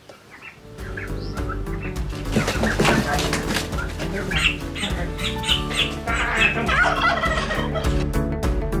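Young turkeys calling and a caught turkey flapping its wings, over background music that comes in about a second in.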